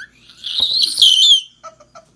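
A young child's loud, high-pitched squeal lasting about a second, its pitch dropping at the end, then quick rhythmic giggles.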